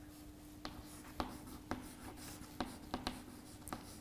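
Chalk writing on a chalkboard, faint: a run of short, irregular taps and scratches as a word is written.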